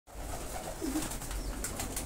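A flock of domestic pigeons feeding on grain in a loft: one short coo just before a second in, with wing flaps and brief clicks and scuffles from the birds in the second half.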